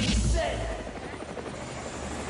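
Hip-hop theme music ending on a rapped word, then dropping away about half a second in, leaving a steady, noisy rumble.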